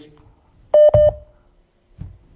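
Two short electronic beeps in quick succession, each a single steady mid-pitched tone, heard on a call-in phone line while the caller does not answer.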